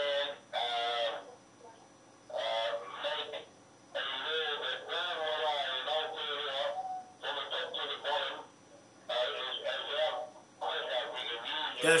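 The other side of a phone call heard over a mobile phone's loudspeaker: one voice talking in phrases with short pauses, with a thin phone-line sound. Near the end a nearby man answers.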